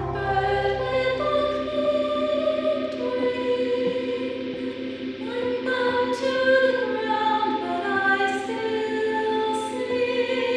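Several voices singing in close harmony, holding notes that shift from chord to chord over a steady low note, with no clear words.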